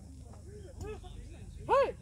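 Voices chattering, then one short, loud, high-pitched shout near the end.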